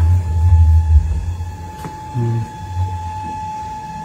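Low rumble of handling noise on a handheld phone microphone as it is carried, loudest in the first second, with a thin steady high tone underneath.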